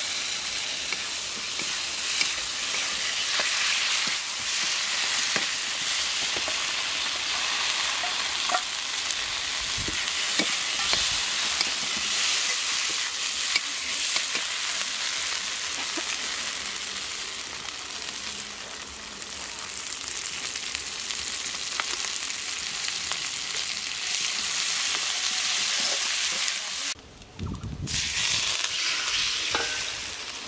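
Anabas (climbing perch) pieces and spice paste frying in a hot wok: a loud, steady sizzle, with the metal spatula scraping and ticking against the pan as it is stirred. The sizzle breaks off for a moment near the end, then comes back.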